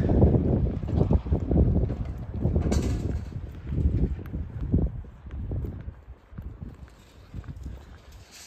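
Wind buffeting the microphone in uneven gusts, a low rumble that is strongest in the first half and eases after about five seconds, with a brief hiss about three seconds in.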